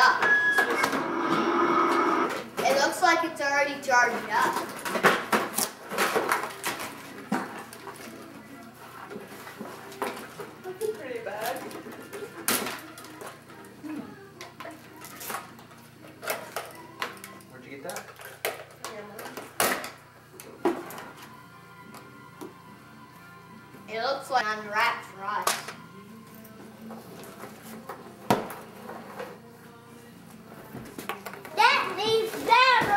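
Gift wrap and cardboard packaging being torn and handled, with many small clicks and knocks, amid voices that come in a burst in the first few seconds and again about 24 seconds in.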